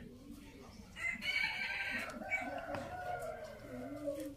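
A rooster crowing: one long crow that starts about a second in and lasts about three seconds.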